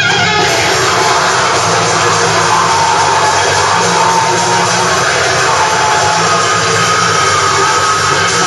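Death metal band playing live: a loud, dense wall of distorted guitars and drums with no breaks.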